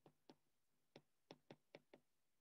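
Faint taps of a stylus tip on a tablet's glass screen while handwriting, about seven short irregular clicks.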